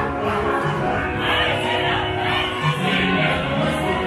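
Gospel-style choir singing over music, steady and full throughout.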